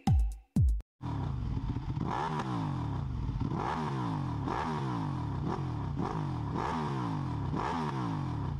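A drum-machine music beat ends about a second in. Then a motorcycle engine is revved again and again, about once a second, the revs falling away after each blip.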